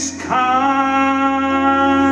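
Live music from a slow soul ballad: after a brief break, one long, steady note is held from about a third of a second in.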